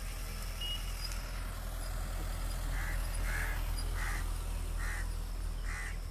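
Steady low rumble of slow-moving vehicles on a road, with a bird's five short harsh calls, about three-quarters of a second apart, in the second half.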